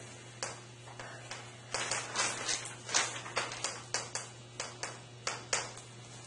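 Chalk tapping and scratching on a blackboard as figures are written, an irregular run of short sharp taps a few per second, over a steady low hum.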